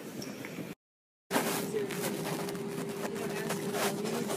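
Airport terminal hubbub that cuts off after under a second, then half a second of silence, then airliner cabin noise: a steady drone with one constant hum and scattered light clicks.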